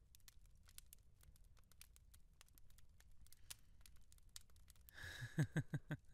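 Quiet room tone with faint, scattered clicks, then a man's soft laugh near the end.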